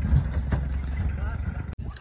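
A small pickup truck's engine running as it drives off across the field: a steady low rumble under a light even hiss. The sound cuts off sharply near the end.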